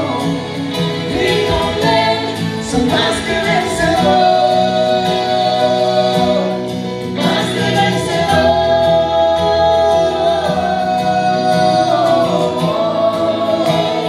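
Live gospel duet: a man and a woman singing into microphones over instrumental backing, holding long notes about four seconds in and again past the middle.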